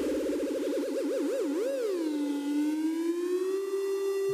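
Electronic sound effect: a single synthesized tone with a fast warble that slows and widens over the first two seconds, then settles into a held note that slides slowly upward.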